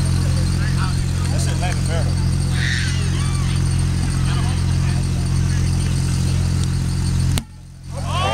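A steady low-pitched hum with faint distant voices over it. The sound cuts out abruptly for about half a second near the end.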